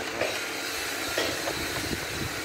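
Steady noise of carved wood being sanded.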